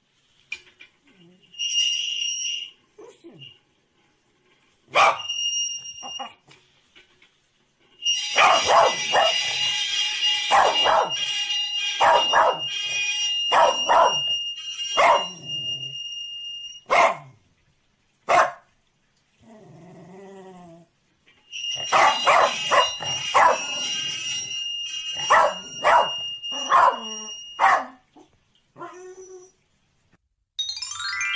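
A corgi barking in two long bouts of rapid, sharp barks, the first about eight seconds in and the second about twenty-one seconds in, after a few single barks. A steady high-pitched tone sounds along with both bouts.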